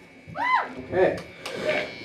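A person's voice whooping, rising then falling in pitch about half a second in, followed by two short calls.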